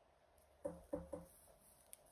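A person's voice making three short hummed or murmured syllables in quick succession, starting about half a second in.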